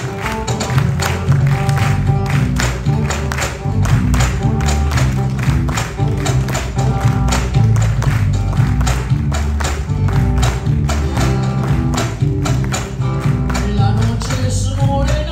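Live Peruvian marinera band playing an instrumental passage on guitars, electric bass and cajón, with a steady, quick rhythm of sharp percussive strikes.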